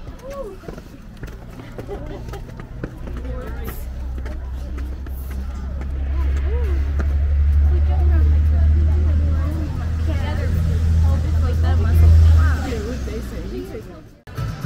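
A vehicle engine's low rumble builds from about four seconds in, is loudest around the middle and again near the end, then falls away. Indistinct voices and chatter run over it.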